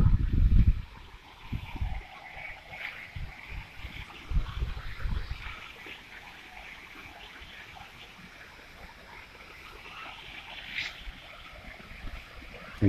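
Wind buffeting the phone's microphone in a few gusts during the first half, then a faint, steady wash of water from a garden fountain.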